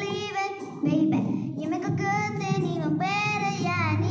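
A girl singing pop-song lines, with short breaths between phrases and a long held note that bends in pitch near the end.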